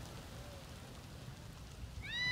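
Faint outdoor background noise: a steady, even hiss over an unsteady low rumble, with no distinct event.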